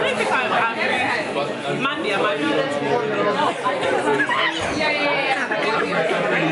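Several people talking over one another: lively chatter of a group at a restaurant table, with other diners' voices behind.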